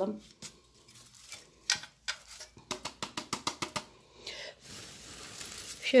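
Fine gravel and coarse sand rattling in a shallow planter as it is shaken by hand, in several quick bursts of rapid clicking, to settle the top dressing around the lithops.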